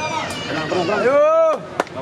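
A loud drawn-out shout that rises and falls in pitch, lasting about a second, then a single sharp pock of a tennis racket striking the ball near the end.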